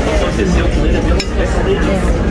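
Murmur of diners' voices in a busy dining room, with a light clink of cutlery about a second in.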